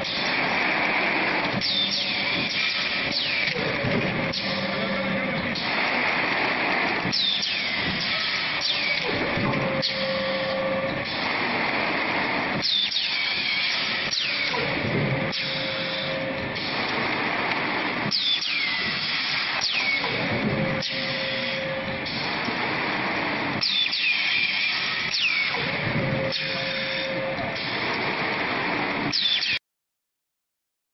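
PS foam vacuum forming and cutting machine running through its press cycle about every five and a half seconds, with bursts of air hiss and quick falling whistle-like tones each cycle over a steady factory din. It cuts off suddenly near the end.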